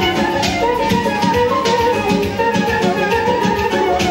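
Live Azerbaijani wedding band playing traditional dance music: a melody on clarinet and accordion over a steady, even drum beat.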